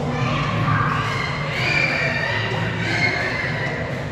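Busy indoor hall ambience: crowd noise with a high, wavering voice over a steady low hum.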